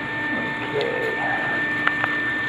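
Cellulose insulation blower running: a steady whine over a constant rush of air and fiber through the hose, with a sharp click near the end.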